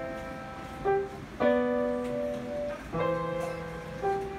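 Grand piano played slowly, with notes and chords struck about a second in, at about a second and a half, and near three seconds, each left to ring and fade.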